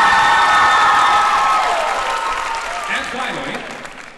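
Theatre audience applauding with high-pitched cheering, loud at first and dying down over the last two seconds.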